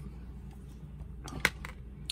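A six-sided die rolled onto a cardboard game board: a few quick clicks as it lands and settles, about one and a half seconds in. It is the roll that decides whether a fate turn is triggered.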